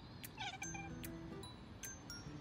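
A tabby cat gives one short, wavering chirp-like meow about half a second in, over background music.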